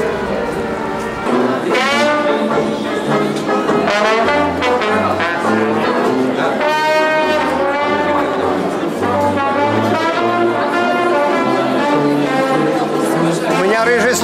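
Brass band music: a melody with wavering, sustained notes over a low bass line that steps from note to note.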